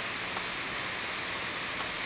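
Steady background hiss from the recording with a few faint, short ticks.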